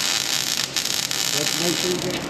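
MIG welder arc crackling and sizzling steadily as a bead is run on steel plate.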